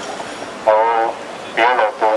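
A man's voice through a handheld microphone and amplifier: two short drawn-out utterances, the first held on one pitch.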